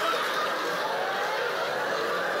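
Live comedy audience laughing, a steady wash of crowd laughter that fills the pause after a punchline.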